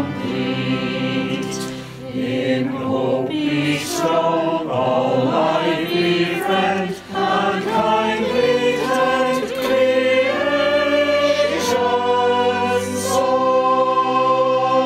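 A choir singing a hymn verse in several voice parts, ending on a long held chord near the end.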